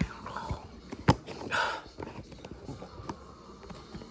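Handling noise: knocks and rustles as a hand-held phone camera is moved about, with one sharp knock about a second in.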